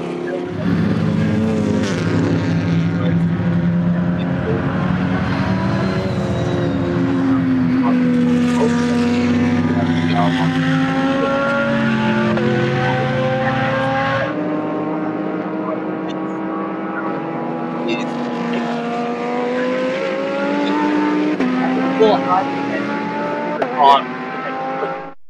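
Race car engines pulling hard on track, their pitch climbing and dropping back again and again as they change gear. About 14 seconds in the deep rumble cuts out and a higher engine note carries on, with a few sharp cracks near the end.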